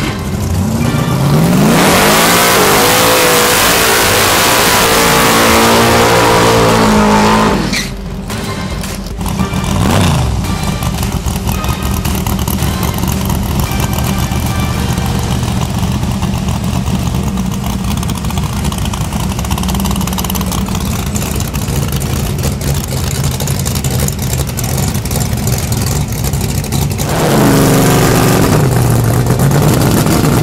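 Drag car's engine held at high revs through a tyre-smoking burnout for about six seconds, then dropping off and idling as the car rolls up to the line. Near the end an engine revs hard again.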